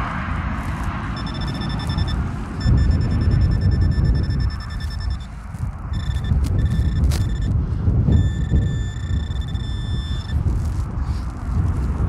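Handheld metal-detecting pinpointer giving a high electronic buzzing tone in several on-and-off spells as it is worked through loose ploughed soil, signalling a target close by. A low rumble runs underneath.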